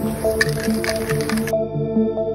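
Background music over the hiss of an aerosol spray-paint can sprayed in short bursts; the hiss cuts off suddenly about a second and a half in, leaving only the music.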